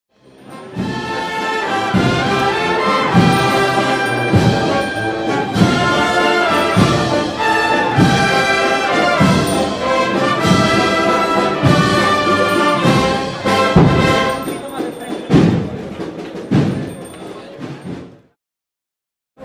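Brass band playing a processional march, with a steady bass-drum beat under the brass melody. It fades in at the start and cuts off abruptly at the end.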